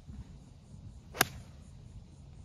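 A golf iron striking a ball off turf: one sharp crack about a second in, with a short swish from the downswing rising just before it.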